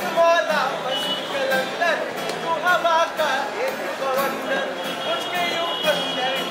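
Live music: two acoustic guitars strummed with a man singing over them.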